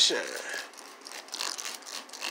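Trigger spray bottle of Turtle Wax Ice Seal and Shine spritzing onto a painted panel: short hissing sprays with the clicks of the trigger, two of them well after a second in.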